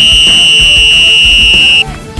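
A coach's whistle blown in one long, shrill blast very close to the microphone, lasting nearly two seconds and cutting off sharply just before the end.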